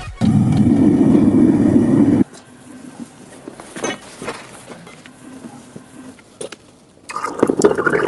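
A steady rushing noise for about the first two seconds that cuts off abruptly, then quiet with a few faint knocks. About seven seconds in, molten lava starts pouring from a crucible into an emptied ostrich egg, with loud, dense crackling.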